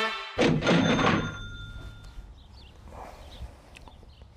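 A brass jingle cuts off, and about a third of a second in a loud crash with a bell-like metallic ring lands on its end. Its clear high tones fade out over about two seconds, leaving only faint background noise.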